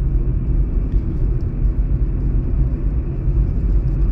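Steady low road rumble inside the cabin of a moving car: tyre and engine noise at cruising speed.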